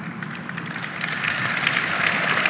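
Large audience applauding, the clapping swelling louder about a second in.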